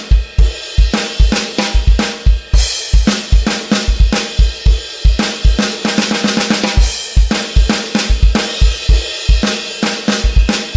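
Electronic drum kit playing a steady medium-tempo rock groove of about 104 beats a minute: bass drum, snare backbeats and hi-hat eighth notes, with hits repeating evenly throughout.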